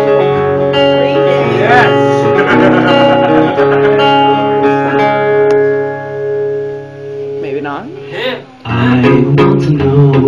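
Acoustic guitar strumming sustained chords as the introduction to a song. About six seconds in the playing eases off to a quieter stretch, then full strumming comes back shortly before the end.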